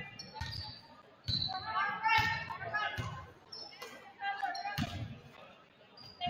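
Basketball dribbled on a hardwood gym floor: several irregularly spaced thuds, with voices calling out in between.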